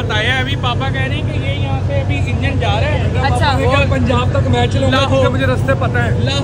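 Voices talking over the steady low rumble of an idling diesel locomotive at a station platform.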